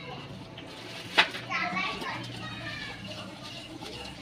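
Children's voices calling and playing in the background, with one sharp knock about a second in.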